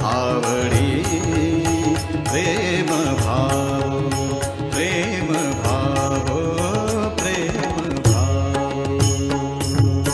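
Marathi devotional song to Vitthal: a melodic sung line over a steady rhythmic beat of drums and ticking percussion.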